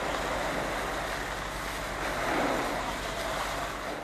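Steady rushing outdoor noise from the field recording, with no distinct events, cutting off at the very end.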